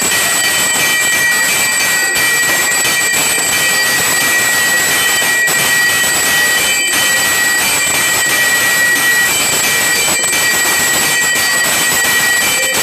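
Temple aarti instruments (bells, gongs and drums) played together in a loud, unbroken din, with the steady ring of bells above it.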